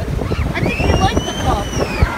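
Wind buffeting the microphone over the wash of surf on a beach. A high, drawn-out cry rises and falls from about a third of the way in to the end.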